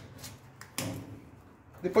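Blue protective tape being peeled off a stove's brushed-steel panel: a click at the start, then a short noisy peel about a second in, before speech comes back near the end.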